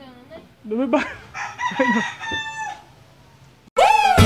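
A rooster crowing: one long crow that rises, then holds steady for over a second before trailing off. Just before the end, loud electronic music with a heavy beat cuts in suddenly.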